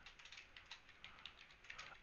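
Faint computer keyboard typing: a run of quick, irregular key clicks.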